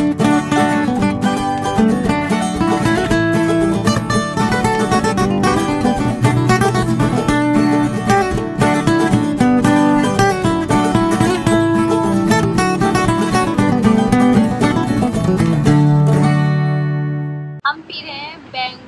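Background music led by plucked acoustic guitar, with a steady rhythm, ending on a held chord that fades out near the end.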